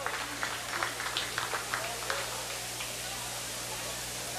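Gym crowd chatter during a stoppage in a basketball game, with scattered short sharp sounds over a steady low hum.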